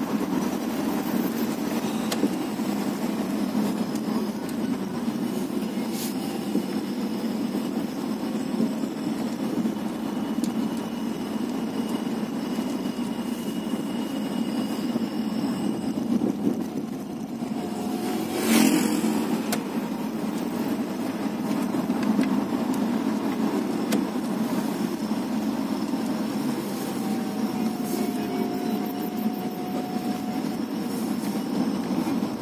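Steady engine and road noise heard from inside a moving car. About eighteen seconds in, an oncoming vehicle passes close by with a brief, louder rush.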